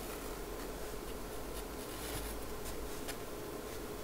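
Pencil sketching lightly on watercolour paper: soft, irregular scratching strokes of the graphite tip across the paper, over a faint steady hum.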